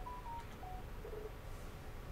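Low room noise in a lecture hall with a few faint, brief tones at different pitches in the first second or so, then only the room noise.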